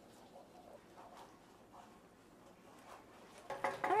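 Faint sounds of sauce being stirred in a frying pan on the stove; a woman's voice comes in near the end.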